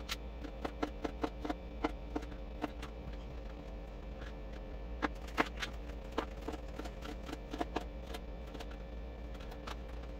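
Chef's knife slicing cucumbers on a thin plastic cutting mat: a run of short, irregular taps as the blade cuts through and strikes the board, thick in the first few seconds and sparser after, over a low steady hum.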